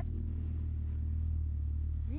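A steady low hum with no change in pitch or level.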